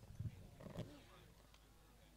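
Near silence with a few faint, indistinct voices in the first second.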